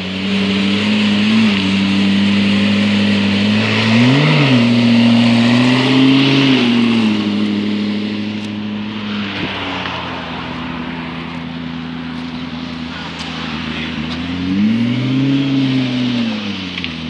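McLaren P1's twin-turbo V8 idling with a steady drone, given short throttle blips about four seconds in, around six seconds and again near the end, where the pitch briefly rises and falls.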